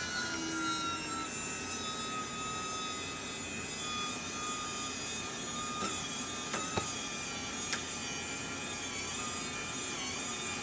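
Integy T3 1:10 scale wireless Mega Winch's small electric motor and gearbox whining steadily as it reels in its cable under load, hoisting three RC crawler tires on metal rims chained together. A few light clicks come about six to eight seconds in.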